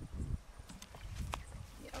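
Water flooding a scorpion burrow in the ground: a brief splash that dies away just after the start, then a few faint plops and clicks as the muddy puddle settles over the hole.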